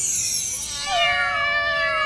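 A high falling swoosh, then many cats meowing at once in overlapping, drawn-out calls: a cartoon sound effect for cats raining down.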